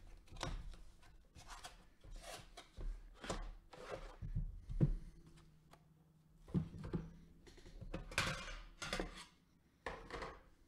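Gloved hands opening a cardboard box and handling the metal card tin inside: a run of irregular rustles, scrapes and light knocks, with a longer scraping stretch about eight seconds in.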